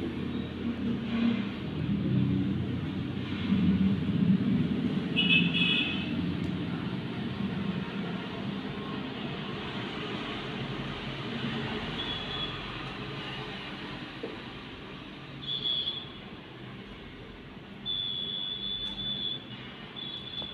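Steady rumble of road traffic, louder in the first few seconds, with a few short high-pitched tones around the middle and near the end.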